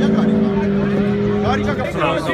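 Car engine held at steady revs, a constant droning tone that stops near the end, as men's voices start.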